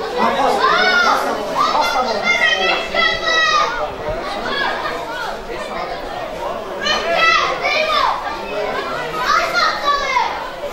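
Children's voices shouting and calling out to one another in a series of high calls: one about a second in, a run between two and four seconds, and more near the end.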